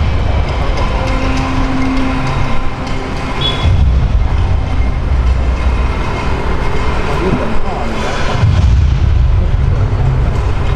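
Busy roadside street ambience: a low rumble of road traffic that swells and fades, with indistinct voices of people nearby.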